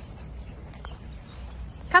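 Quiet outdoor background with a low, steady rumble, then a woman's high voice starting to call a dog's name right at the end.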